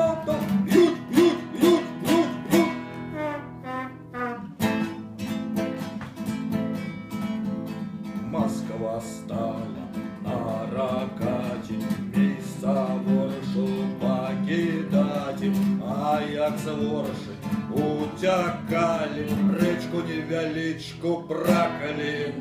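Acoustic guitar strummed in an instrumental break between verses of a folk song. A man's sung line ends in the first few seconds, then the guitar carries on alone with regular strums.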